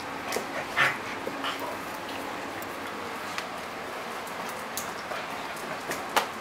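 Two dogs, one a Labrador retriever, playing and scuffling together, with a few short dog sounds in the first second and a half, the loudest about a second in, then only the odd click.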